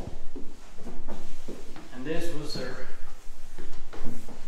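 Footsteps climbing old wooden stairs, a few separate knocks in the first two seconds, with a short indistinct voice about two seconds in.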